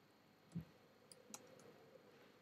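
Faint computer keyboard keystrokes: a soft low thump about half a second in, then a few light sharp clicks as the last letters and a comma are typed.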